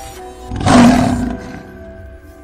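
A lion's roar sound effect about half a second in, lasting under a second and the loudest sound, over a short music sting of held notes.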